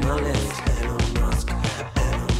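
Music with a steady beat and strong bass.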